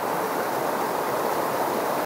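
A fast river running over rocks in small rapids: a steady, even rush of white water.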